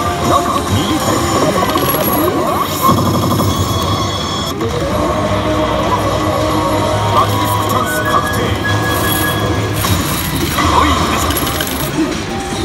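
A Basilisk Kizuna 2 pachislot machine playing the music and character voice lines of an effect sequence that ends in a confirmed Basilisk Chance bonus.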